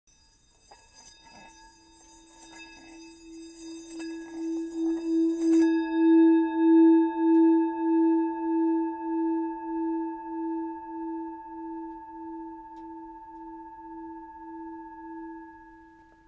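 A sustained metallic ringing tone with several overtones. It swells over the first few seconds with a faint rubbing noise underneath, then fades slowly with a steady, wavering pulse.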